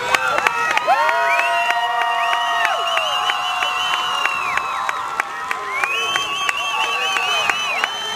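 Crowd in the stands cheering, with many long, held shouts and whoops overlapping and some scattered claps.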